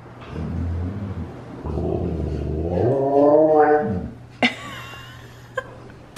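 Husky making low, rough growling play-noises, then a drawn-out call that rises and falls in pitch for about a second, about three seconds in. A sharp click follows shortly after.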